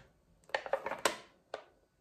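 Aluminium foil cake pan with a clear plastic lid being picked up and handled: a few short crinkles and clicks between about half a second and a second in, and one more about a second and a half in.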